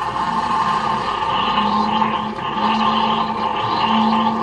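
A small electric kitchen appliance running steadily, giving a constant motor hum with a higher whine above it.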